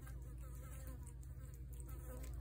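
A flying insect buzzing close by, wavering in pitch, over a low steady rumble, with faint soft clicks from a cat chewing wet food.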